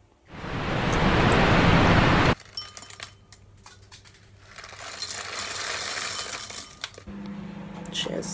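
A loud, even rushing noise for about two seconds that stops abruptly, followed by quieter scattered clicks, clinks and rustling of kitchen things being handled, including a crinkly plastic packet. Music comes back near the end.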